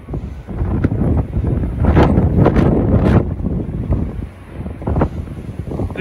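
Storm-force wind buffeting the microphone in gusts, a heavy low rumble that swells loudest about two to three seconds in.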